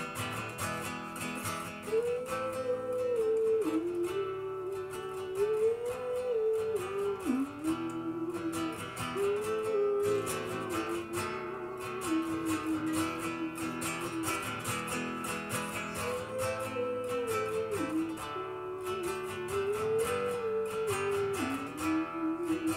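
Classical acoustic guitar strummed in a steady accompaniment, with a smooth wordless melody line rising and falling above it.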